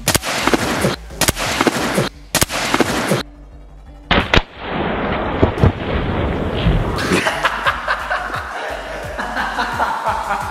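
A layered water balloon bursting with a sharp pop about four seconds in, then its water splashing down onto a person lying in an inflatable kiddie pool, over background music.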